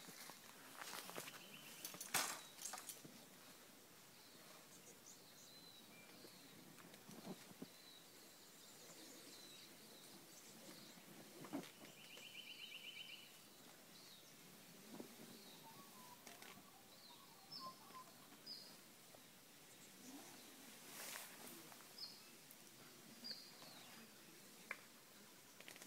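Quiet bush ambience: faint, scattered bird chirps and a short buzzy trill about halfway through, with a few light knocks, the sharpest about two seconds in.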